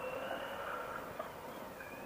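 Faint, steady background noise of a motorcycle ride picked up through a helmet intercom, an even hiss with a faint high whine held at one pitch, slowly fading.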